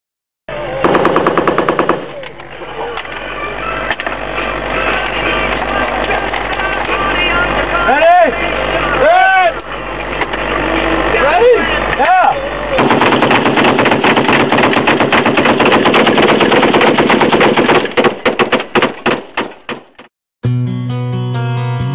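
Automatic machine-gun fire: a short rapid burst about a second in, then a long sustained stretch in the second half that breaks up into separate bursts near the end.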